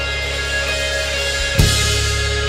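Instrumental rock passage, no vocals: sustained bass and guitar notes with drums, and a loud drum-and-cymbal hit about one and a half seconds in.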